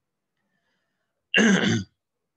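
A man clears his throat with a short two-part cough, about one and a half seconds in.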